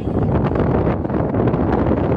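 Wind blowing across the microphone, a steady low rumbling buffet.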